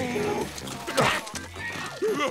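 Cartoon background music with a steady bass line, a brief cry sliding down in pitch near the start, and a sharp hit sound effect about a second in.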